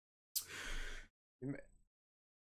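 A man's breathy sigh, followed about half a second later by a short voiced sound.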